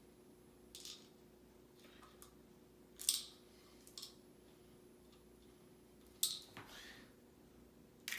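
Faint hand handling of a small plastic medication container while tablets are got out: about five short, scattered plastic clicks and rustles, the loudest about three seconds in.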